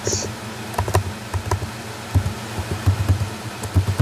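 Typing on a computer keyboard: irregular keystroke clicks and taps as a short chat message is typed out.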